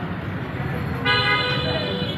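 Street traffic rumble, then a vehicle horn sounds about a second in and is held steadily.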